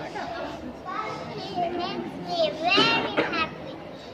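Young children's high-pitched voices speaking, with a girl's voice in front and other small children's voices around it.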